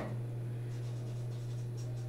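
Marker pen writing on a whiteboard in faint short strokes, over a steady low electrical hum.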